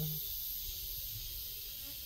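Steady, high-pitched chirring of insects in the surrounding grass, an even drone with no breaks.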